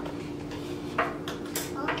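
Plastic makeup containers being handled and set down on a tabletop, giving a few light clicks and knocks, one about a second in and a couple more near the end.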